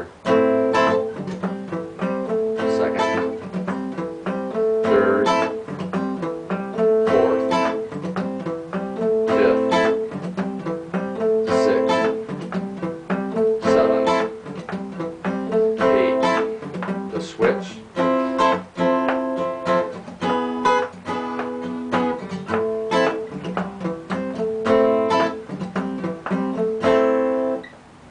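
Acoustic guitar playing an A minor blues progression: a repeating picked A minor riff in a steady rhythm, changing chords about two-thirds of the way through.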